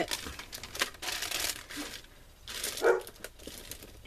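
Paper rustling and crinkling as a paint-stained paper mask is lifted and a paper sheet is handled and pressed flat, with a few light clicks; busiest in the first second or two.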